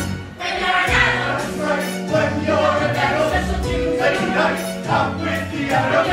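A large stage-musical cast sings together as a choir over an instrumental accompaniment with a steady bass line. The music dips briefly just after the start, then the full ensemble comes back in.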